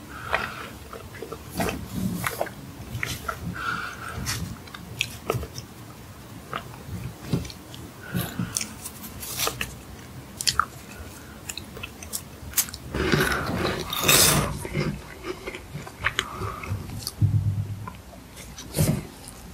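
Close-miked eating sounds: wet chewing of a soft red bean bun with small clicks. About two thirds of the way through comes a louder stretch of crisp crunching as a meringue cookie is bitten.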